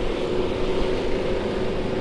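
Riding noise from a Yamaha NMAX scooter underway: a steady engine hum with one even tone, over a rush of road and wind noise.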